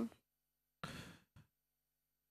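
A single short, soft breath drawn about a second in, in an otherwise hushed pause between speakers.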